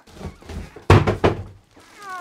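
Foam packing and cardboard rustling as a heavy inverter charger is unpacked from its box, then a single heavy thunk about a second in that fades over half a second.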